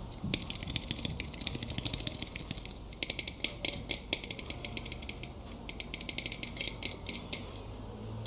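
Fingernails tapping and clicking on a small hand-held object close to the microphone: rapid, irregular flurries of crisp clicks with brief pauses, about three seconds in and again about halfway through.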